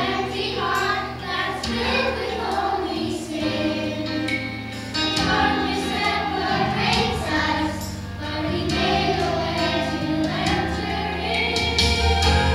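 Children's choir singing together over a sustained low instrumental accompaniment.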